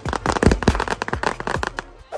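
Fireworks going off in a rapid run of sharp cracks and pops that thin out near the end.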